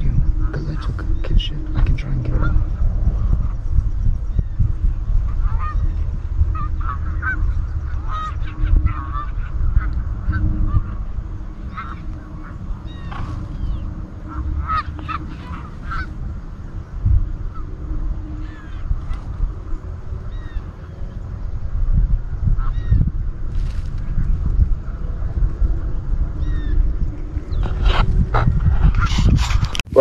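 Canada geese honking: many short, scattered calls throughout, over a steady low rumble.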